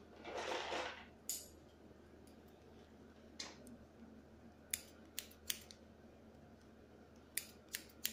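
Hairdressing scissors snipping hair, about seven short crisp snips spaced irregularly, with two quick pairs in the second half. A brief swish comes just before the first snip.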